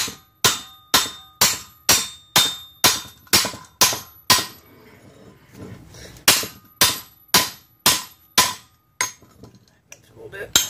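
Big hammer striking a steel plate clamped on a railroad-rail anvil to bend it over, with sharp ringing metal blows about two a second. There are about ten blows, a pause of roughly two seconds just before the middle, then a second run of about six blows.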